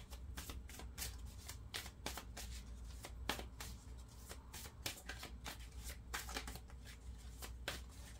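A deck of tarot cards being shuffled by hand: a run of quick, irregular soft clicks and flicks of card against card, over a low steady hum.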